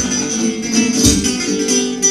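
Live folk-punk band playing loudly through a club PA: strummed acoustic guitar over a steady low beat, a thud just under twice a second.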